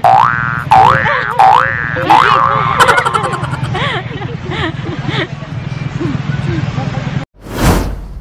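A cartoon "boing" sound effect, a rising sweep played four times in quick succession about 0.7 s apart, over voices. Near the end a short whoosh leads into the channel's logo sting.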